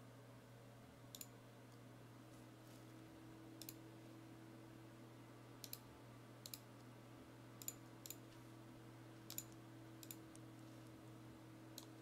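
Computer mouse clicking: about eight separate, sharp clicks scattered a second or two apart, over a faint steady electrical hum.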